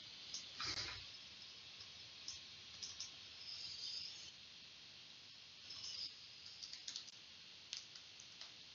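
Faint, scattered clicks of a computer mouse and laptop keyboard, with a cluster of keystrokes near the end as a short label text is typed.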